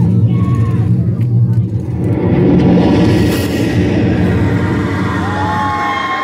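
Loud music over a club PA with the crowd shouting and cheering; the crowd noise swells about two seconds in.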